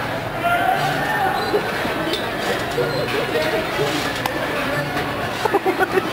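Indistinct voices and chatter from the riders and people around a moving carousel in a mall, with a short run of quick pulses near the end.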